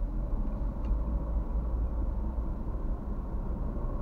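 Car driving, its engine and tyre noise heard from inside the cabin as a steady low rumble.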